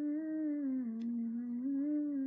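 A girl humming one long, unbroken note with closed lips, the pitch dropping a little about a second in and rising back near the end.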